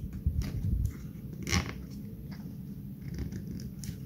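Nylon cable tie being pulled tight through its head: a series of small ratchet clicks, the loudest about one and a half seconds in, over low rumble from fingers handling the board.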